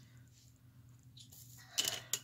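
A faint steady hum, then near the end a brief sharp clack of small hard objects knocking together.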